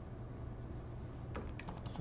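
A few quick clicks of computer keys over a steady low hum. The clicks come about a second and a half in, as the browser view is zoomed out to 80%.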